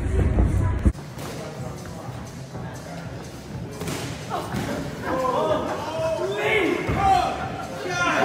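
A few thuds of gloved punches landing in sparring, then from about halfway through a voice crying out in rising and falling calls.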